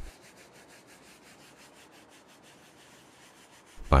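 Soft brush scrubbing cleaning foam into a leather car seat: faint, quick repeated scrubbing strokes as the dirt is worked loose.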